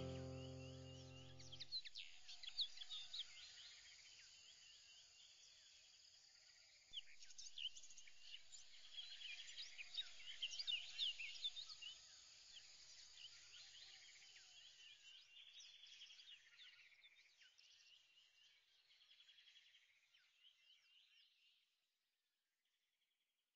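Background music ending on a held chord that dies away in the first two seconds, followed by faint birdsong: many short high chirps and trills, busiest near the middle, fading out just before the end.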